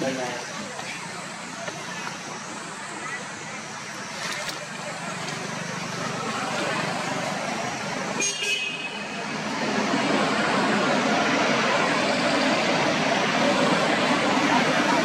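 Steady outdoor background noise, with no clear single source, growing louder about ten seconds in. A brief high ringing tone sounds about eight seconds in.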